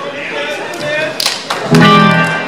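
Amplified electric guitar notes played loosely through stage amps, not a full song. There is a sharp knock a little after a second in, and a loud sustained note or chord near the end.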